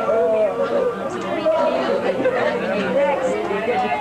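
Many people talking at once: overlapping party chatter from a small crowd.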